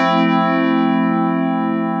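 FM synth sound from Ableton Live's Operator, built from layered sine-wave operators, playing one sustained sound. It opens with a bright attack whose upper overtones fade away over about two seconds while the low body holds on with a slight wavering movement from finely detuned operators.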